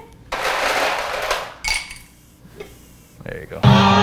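A short rustling clatter of ice as a hand scoops it from a plastic bag, then a quiet gap. About three and a half seconds in, a hip-hop beat with a heavy bass line starts playing loud over studio speakers.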